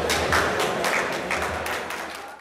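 Scattered hand claps from a small crowd applauding, irregular and sparse, over a steady low hall hum.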